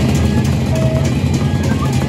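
Gendang beleq ensemble playing: large Sasak barrel drums beaten in a dense, driving rhythm, with cymbal clashes and a few short high melodic notes over the top.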